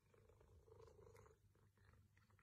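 Very faint purring of a tabby cat, a low steady rumble barely above near silence.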